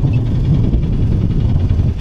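Gravely Atlas side-by-side utility vehicle's engine idling, a steady low rumble.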